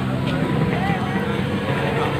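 A vehicle engine idling steadily close by, under the scattered chatter of a crowd of people.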